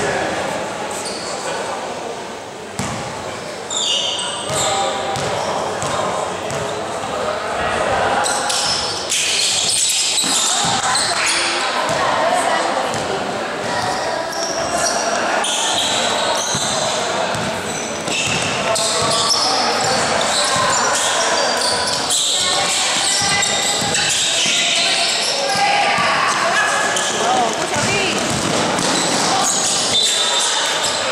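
A basketball bouncing on a gym floor during play, among many voices calling and chattering across a large indoor gym hall.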